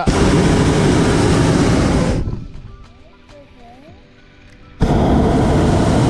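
Two blasts of a hot air balloon's propane burner, each a steady roar lasting about two seconds, with a short lull between them, firing to climb just after takeoff.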